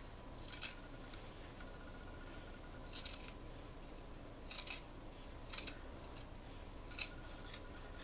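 Scissors snipping through the cotton fleece of a sweatshirt's neckband, cutting just above the stitching. About half a dozen short, faint, irregularly spaced cuts.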